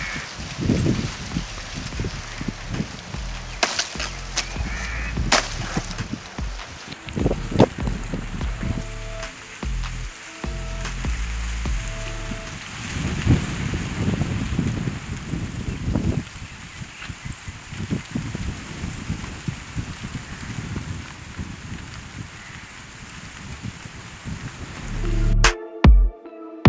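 Outdoor ambience with wind on the microphone, broken by scattered sharp snaps and rustles. Background music comes in near the end.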